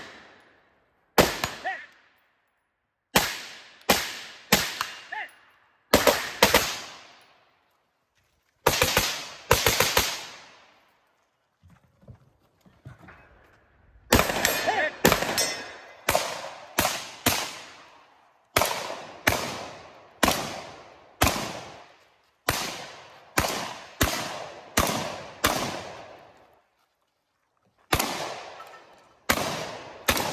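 Gunfire from a shooter working through a 3-gun stage: strings of sharp shots, some in quick pairs and some in steady runs of about one shot every half to two-thirds of a second, broken by short pauses while he moves. About halfway through there is a lull of a few seconds with only faint knocks before the shooting picks up again.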